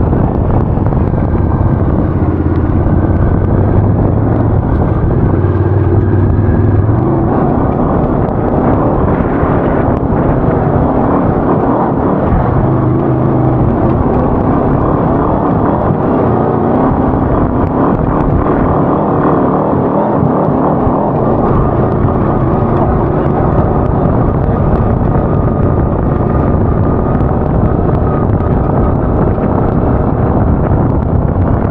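Homemade off-road buggy's engine running under throttle while driving over sand and dirt, its note rising and falling several times, with wind rushing on the microphone.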